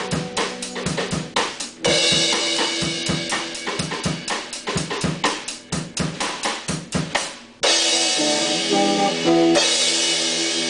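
A Yamaha drum kit and an electric guitar playing together: fast, even drum strokes, with a cymbal wash coming in about two seconds in. Near the end the beat stops for a loud crash and held guitar chords.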